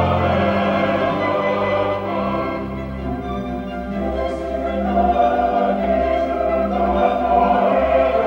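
Mixed choir singing a sacred choral piece in sustained chords, accompanied by a small ensemble of violins and flute.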